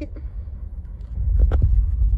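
A low rumble on the microphone that grows louder in the second half, with a single sharp click about one and a half seconds in.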